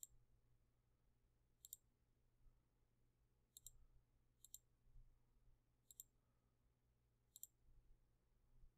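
Faint computer mouse clicks, six of them spaced a second or two apart, over near silence.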